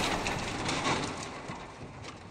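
Intro sound effect of many small blocks tumbling and clattering. A dense rattle of small knocks fades steadily away after a crash.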